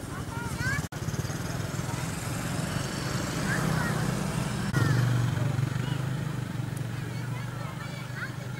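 Motorcycle and car engines running at low speed close by, getting louder about five seconds in, with people's voices in the crowd over them. The sound cuts out for an instant about a second in.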